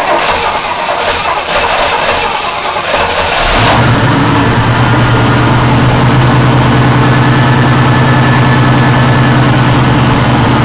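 A 1972 Chevy Nova's swapped-in Oldsmobile 350 V8, just fired up, runs unevenly for the first three or four seconds, then settles into a steady idle.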